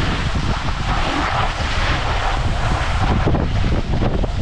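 Wind rushing and buffeting over the microphone, mixed with snowboard bases and edges sliding and scraping over packed snow as the riders carve downhill at speed. It is a loud, steady rush with a fluttering low rumble.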